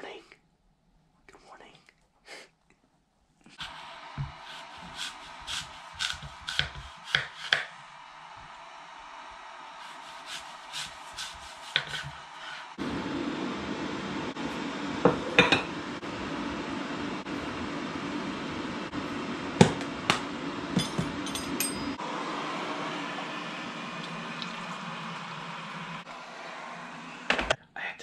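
Kitchen clatter while coffee is made: a spoon and cups clinking on a stone countertop, with sharp clicks and knocks. Under it runs a steady hiss from an electric kettle heating, which deepens into a louder rumble for several seconds in the middle.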